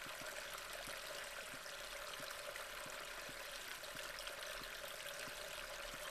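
Faint, steady, water-like rushing hiss, like a background bed of rain or sea, with soft ticks about three times a second underneath.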